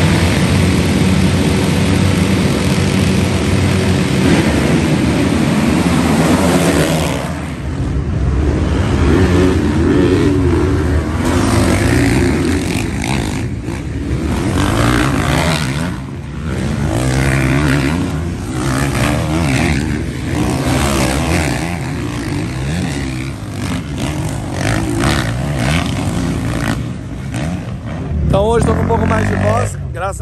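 A full start gate of 450-class motocross bikes revving hard together and launching off the line, many engine notes piled on top of each other. After about seven seconds the engines rise and fall as bikes pass on the track.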